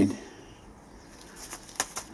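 Faint handling sounds of gloved fingers working compost around a seedling in a small plastic plant pot, with a few light clicks near the end.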